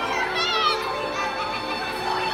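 Many children talking and calling out together over music playing in a large hall; a high child's voice stands out about half a second in.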